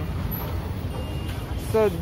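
Steady low background rumble with no distinct events, and a man starts speaking near the end.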